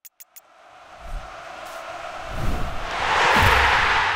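End-card sound effect: a few quick clicks, then a rushing swell of noise with low thumps underneath that builds to its loudest about three and a half seconds in.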